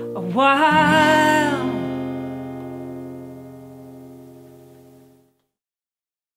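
A woman's voice holds a last sung note over a strummed acoustic guitar chord, the closing chord of the song. The voice stops before two seconds in, and the chord rings on, fading slowly, until the sound cuts off abruptly about five seconds in.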